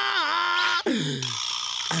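A voice held on one long drawn-out note that dips and comes back up. About a second in it breaks off into a lower voice sliding down in pitch.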